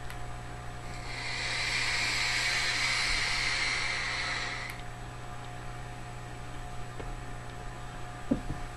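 Long draw on a SMOK sub-ohm vape tank with a triple coil firing at 98 watts: a steady airy hiss, starting about a second in and stopping abruptly a little under four seconds later.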